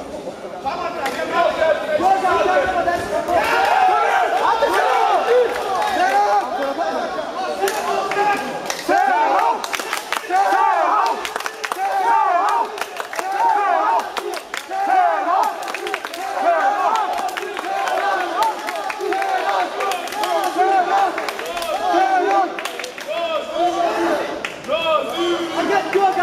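A crowd of spectators shouting and calling out encouragement, many voices overlapping without a break, with sharp knocks scattered through.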